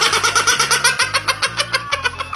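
A toddler laughing hard in rapid, repeated bursts, with a low bass tone underneath.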